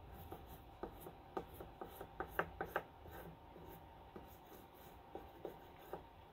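Corner of a wet stick of square sidewalk chalk dabbed onto paper on a wooden table: a quick run of light taps in the first three seconds, then a few more near the end.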